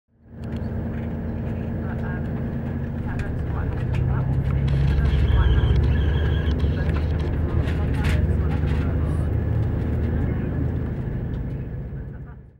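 Passenger train running, heard from inside the carriage: a steady low rumble with scattered clicks from the track, growing louder about four seconds in, with people's voices underneath.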